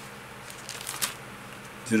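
Paper pages of a Bible rustling as they are leafed through: a few soft, short rustles about half a second to a second in, over a low steady hum.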